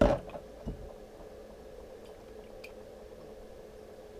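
A small plastic water bottle set down on a wooden tabletop with a sharp knock, followed by a lighter knock under a second later and a faint tick, over a steady low hum in the room.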